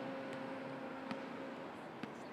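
Faint steady background hiss with a low, steady hum tone and a couple of faint ticks.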